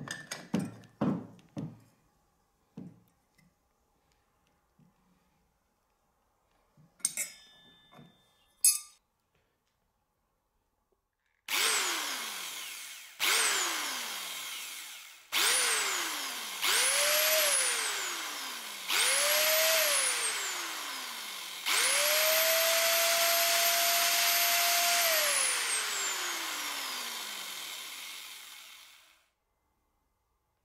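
Vintage AEG electric drill spinning a circular saw disc freely, run in short trigger bursts whose whine rises and falls. It ends with a longer steady run of about three seconds that winds down slowly. Before that come a few metallic clicks of the washers and disc being handled on the spindle.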